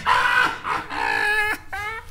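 High-pitched laughter from men, a drawn-out cackle that rises in pitch near the end.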